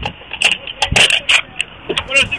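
A rapid series of about six sharp clicks and knocks over a muffled, crackly police recording, with short bursts of a voice between them.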